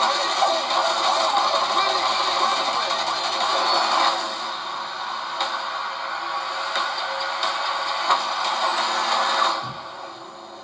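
Action film trailer soundtrack playing through speakers into a small room: a dense mix of music and action sound effects that thins a little partway through and drops away sharply near the end.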